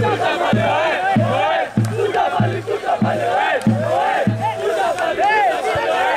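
Football supporters chanting in unison over a steady drum beat, a little under two beats a second.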